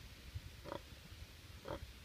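A pig gives two short, faint grunts about a second apart.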